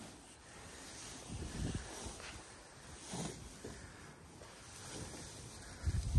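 Low wind rumble on the microphone with faint rustling of hay as hands pull half a bale apart.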